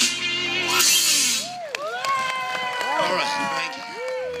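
A live rock-and-roll band with a male singer finishing a song: the full band sound cuts off about a second and a half in. A quieter stretch follows, with a voice and a few held, gliding tones.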